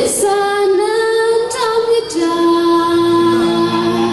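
A woman singing a slow song through a microphone, holding long sustained notes, with a short breath between phrases about halfway through.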